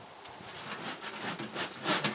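Hands sifting and stirring biochar potting mix in a tub: a run of short rustling, scraping sounds of the crumbly mix, the loudest near the end.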